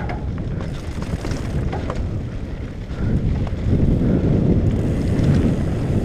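Wind buffeting a helmet-mounted camera's microphone over the rumble of mountain bike tyres on a rocky dirt trail, with a few short clicks and rattles from the bike early on. The rushing noise gets louder about three seconds in.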